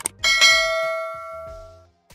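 Notification-bell sound effect from a subscribe-button animation: a click, then a single bell strike a quarter second later that rings and fades out over about a second and a half.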